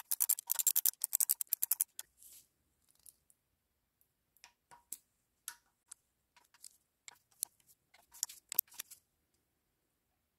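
Socket ratchet clicking in quick runs as 10 mm nuts on the camshaft sprockets are run down. Fewer and more scattered clicks follow, with a short cluster near the end.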